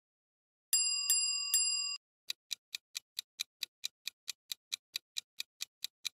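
A bright bell-like chime struck three times in quick succession, then a quiz countdown-timer sound effect ticking steadily, about four and a half ticks a second.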